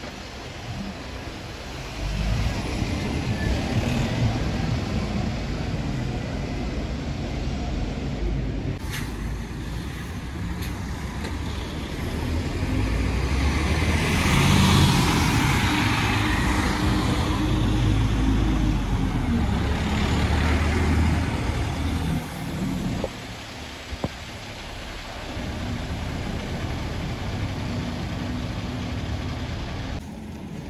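Diesel buses running and pulling away at close range, with the loudest part in the middle as a coach drives close past, its engine and tyre noise swelling and fading. Near the end a single-decker bus's engine is heard as it turns in.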